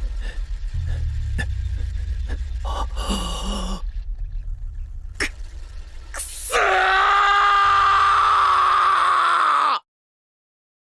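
Trailer sound design: a low rumbling drone with scattered sharp clicks and short glitch hits. About six and a half seconds in, a loud, high, voice-like cry starts, holds steady for about three seconds and cuts off abruptly.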